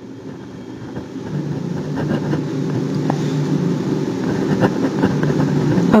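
A steady low rumble like a motor running, growing louder over the first two seconds and then holding, with a few faint clicks.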